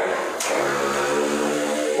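A man's voice held on one steady, unchanging pitch for over a second, as a drawn-out sound between phrases, preceded by a single sharp click.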